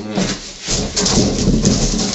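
Clear packing tape being pulled off a handheld tape-gun dispenser onto a cardboard box, a loud crackling rip that builds about half a second in.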